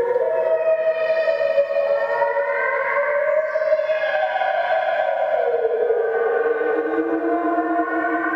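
Sylenth1 software synthesizer playing an atmosphere/FX preset: several sustained tones that slide slowly up in pitch and then back down in a siren-like sweep.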